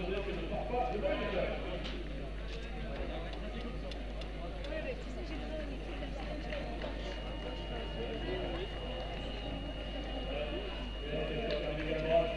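Indistinct chatter of several people around a race finish line, no single voice clear, over a steady low hum. A faint, thin, high steady tone comes in about halfway through.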